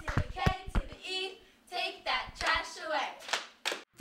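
Young girls' voices in a clapping chant, with several sharp hand claps in the first second.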